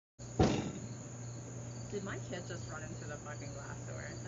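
Faint outdoor ambience with insects chirping and distant voices, and a single knock about half a second in.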